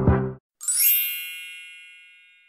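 Background music with a beat cuts off suddenly just under half a second in. A moment later a bright, bell-like ding sound effect rings out and slowly fades.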